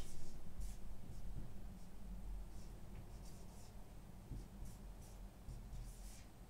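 Marker pen writing on a whiteboard: a string of short, scratchy strokes in small clusters over a low, steady hum.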